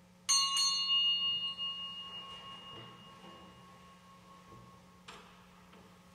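A small bell struck twice in quick succession, ringing and dying away over about three seconds, typical of the bell rung to signal that Mass is beginning. A single sharp knock about five seconds in.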